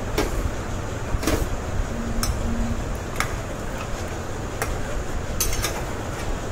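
A metal utensil clinking against a cooking pot about six times at uneven intervals, over a steady low rumble.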